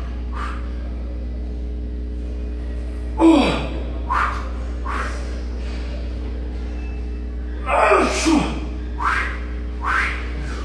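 A man's short, forceful breaths of effort while doing heavy barbell front squats, several of them: one about three seconds in, more at four and five seconds, and a cluster near the end. A steady low hum runs underneath.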